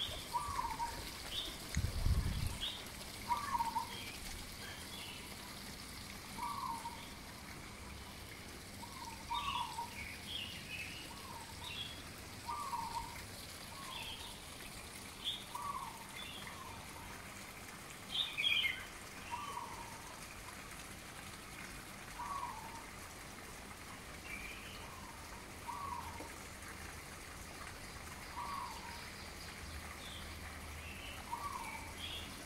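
Birds calling: one bird repeats a short, downward-slurred call every one to three seconds, with higher chirps from other birds in between. A brief low rumble about two seconds in.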